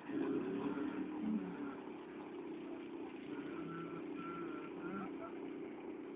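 Steady road traffic noise with engines running, starting abruptly and holding at an even level, with scattered bits of distant voices over it.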